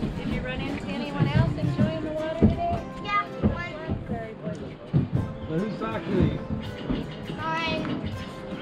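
High-pitched, wavering vocal sounds with no recognisable words, some drawn out, mixed with a few sharp knocks.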